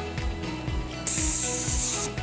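Automatic bagging machine blowing air: a hiss that starts about halfway through and cuts off suddenly. Background music plays underneath.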